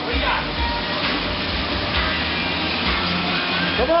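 Schwinn Airdyne fan bike's spoked fan wheel whooshing steadily under a hard sprint, mixed with background music. A shout comes near the end.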